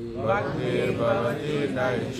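Voices chanting a Sanskrit mantra in a sing-song recitation.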